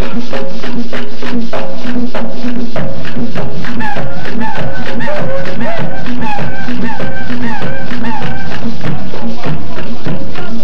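Live mapalé music, very loud: fast, dense Afro-Colombian hand drumming, with heavier low drum strokes coming in about three seconds in. A short rising-and-falling melodic phrase, repeated over and over, joins soon after.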